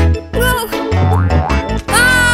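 Children's cartoon background music with a strong bass line, with short sliding-pitch sound effects about half a second in and again near the end.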